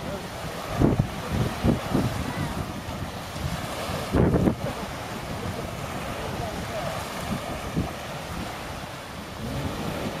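Small waves washing on a sandy shore, with wind buffeting the microphone in gusts, loudest about one, two and four seconds in.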